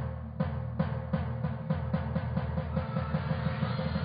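Music: drum hits that start spaced out and come faster and faster, over a held low chord, building up like a concert intro.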